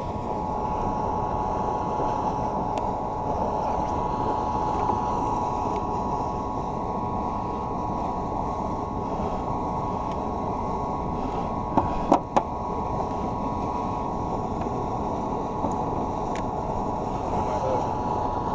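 Electric trolling motor running steadily with a constant high hum, over a wash of water noise. Two sharp knocks about twelve seconds in.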